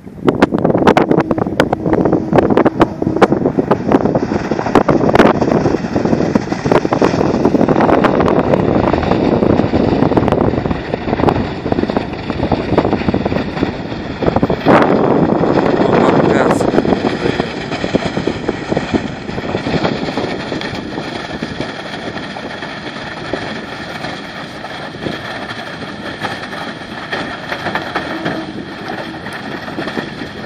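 Engine of a Borus Scout-Pro XL amphibious all-terrain vehicle running as it drives through floodwater, under loud rushing wind on the microphone. The rushing eases after about eighteen seconds and a steady engine hum comes through more clearly.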